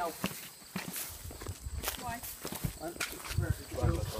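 Footsteps scuffing over dirt and dry weeds, with scattered clicks and low rumbling gusts against the microphone. A short word is spoken about two seconds in.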